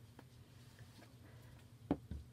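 Faint handling sounds: a few soft taps as a canvas pennant is laid down on a wooden tabletop, over a low steady hum.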